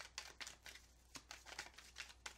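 Deck of tarot cards being shuffled by hand: a faint, quick run of soft card clicks, about six or seven a second, as the cards slip through the hands.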